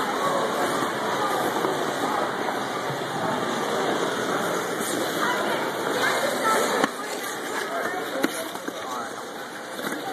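Indistinct voices over the general noise of an indoor ice rink, with a sharp knock about eight seconds in.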